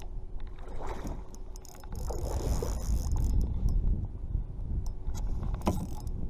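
Wind buffeting the microphone, strongest about two seconds in, over water slapping a kayak hull, with scattered clicks from a Daiwa Fuego spinning reel being cranked while reeling in a hooked fish.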